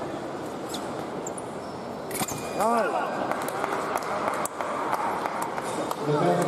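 A men's foil bout in a large hall, with steady crowd and hall noise. About two seconds in a sharp click comes as a touch is scored, and then a short shout that rises and falls. Scattered knocks of footwork on the piste follow.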